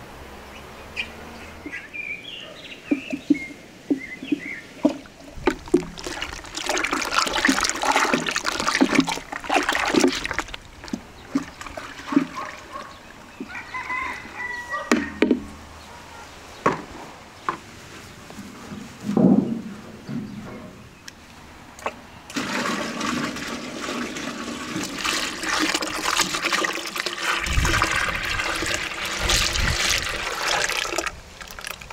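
Wooden paddle stirring liquid in a metal pot, with scattered knocks and splashes. About two-thirds of the way in, a steady rush of thick chocolate ice-cream mix begins pouring into a metal tray, frothing as it fills.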